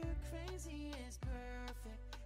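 Background pop music with a steady beat, bass and a melody line.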